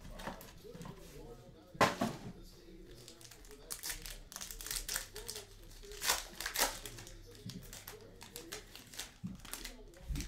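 Foil wrapper of a basketball trading-card pack being torn open and handled, crinkling, with the loudest crackles about four seconds in and again around six seconds.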